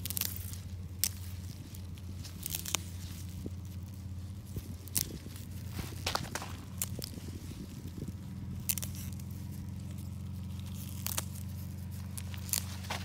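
Dill plants being picked by hand: feathery leaves rustling and stems snapping, in irregular sharp cracks spaced a second or more apart.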